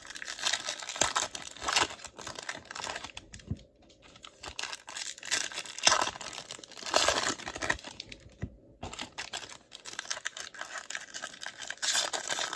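The foil wrapper of a 2023 Topps Series 2 baseball card pack crinkling and tearing as it is opened and the cards are pulled out. The crackling runs on with two short pauses, about four seconds in and again past eight seconds.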